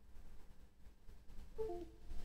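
Windows USB device-disconnect chime: a short falling run of clear tones about one and a half seconds in, over a faint low hum. It marks the LCR meter dropping off USB as it reboots after the firmware file has been copied to it.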